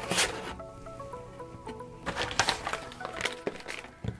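Background music: a soft melody of held notes stepping up and down, with a few brief rustles from paper in a plastic sleeve being handled.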